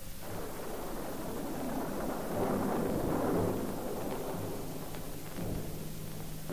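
A roll of distant thunder that swells over about three seconds and then fades away, over the faint steady hum of an old film soundtrack.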